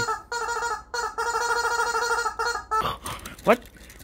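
Rubber chicken squeeze toy squawking: three squawks on one steady, reedy note, the last held for nearly two seconds before it stops.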